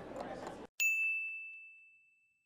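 A countdown clock ticks over a faint background murmur, which cuts off about two-thirds of a second in. A moment later a single bright bell ding rings out and fades over about a second, signalling that the time is up.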